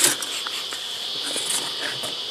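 A steady high-pitched chorus of insects, with a short knock right at the start as a metal bee smoker is set down on the grass.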